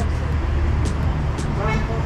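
City street sound: a steady low traffic rumble with footsteps about every half second and faint distant voices. A short car horn toot sounds near the end.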